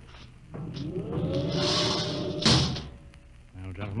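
Radio-drama sound effect of a spaceship hatch being sealed: a hiss with a whine that rises and then holds steady, and a heavy clunk about two and a half seconds in.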